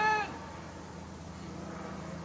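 A drawn-out shout of "in the hole" ends in the first moment, then quiet outdoor ambience with a steady low hum while the putt rolls.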